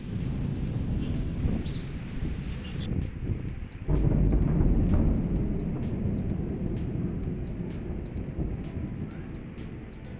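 Rolling thunder: a low rumble that swells sharply into a louder peal about four seconds in, then slowly dies away.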